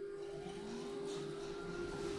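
Schindler elevator machinery running: a motor whine rising steadily in pitch and levelling off near the end, over a steady hum in the car.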